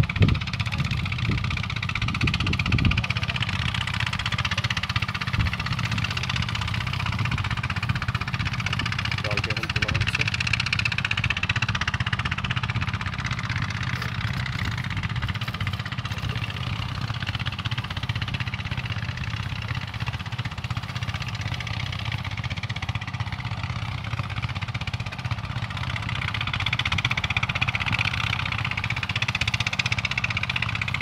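An engine running steadily at a low, even speed, a continuous hum with no changes.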